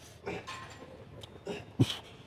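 A man's forced breaths and grunts of effort as he strains through the final rep of a one-arm overhead dumbbell triceps extension: three short ones, the loudest near the end.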